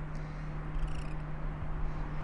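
Steady low hum over a faint, even background rumble, with no distinct events.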